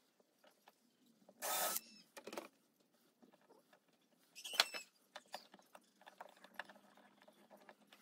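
Faint handling noises of small metal hardware being fitted by hand to a wooden chest: a short scrape about a second and a half in, then scattered light clicks and taps, the sharpest one near the middle.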